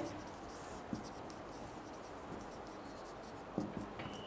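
Marker pen writing on a whiteboard: faint, short scratchy strokes with a couple of light ticks.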